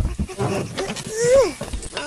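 A young boy's cartoon voice making an excited, wordless sing-song sound whose pitch rises and then falls about one and a half seconds in, after a low thump at the start.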